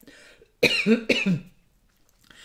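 A woman coughs twice, two short voiced coughs about half a second apart, after a brief breath in.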